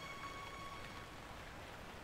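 Faint steady hiss of rain, with the last held note of the background music fading out during the first second.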